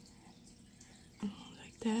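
Quiet room tone for the first second, then a short soft voice and a woman starting to speak near the end.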